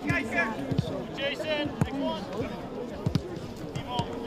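Footballs being kicked in a passing drill: several sharp thuds of boot on ball, with players' shouts and calls across the pitch.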